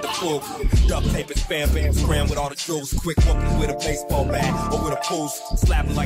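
Hip hop track playing: a rapped vocal over a beat with heavy bass.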